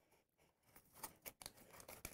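Near silence, with a few faint, short clicks about a second in as a bamboo skewer is slid up through a drinking straw set in a cardboard box.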